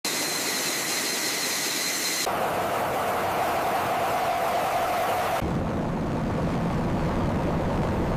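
Jet aircraft engine sound effects in three abruptly cut parts. First a hissing rush with a steady high whine, then a different rush with a lower tone from about two seconds in, then a deep low rumble from about five seconds in.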